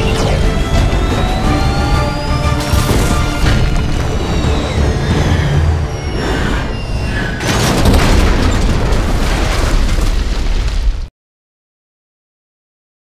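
Action-film soundtrack: dramatic score mixed with a jet aircraft's rising whine and heavy crashes and booms as the burning jet goes down. The loudest impacts come about three seconds in and again from about seven and a half seconds. Everything cuts off suddenly about eleven seconds in.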